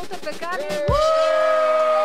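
Edited-in winner sound effect: a low swooping boom about a second in, then a chord of several steady notes that holds on.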